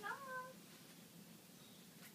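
A short rising vocal call in the first half second, then only faint room tone.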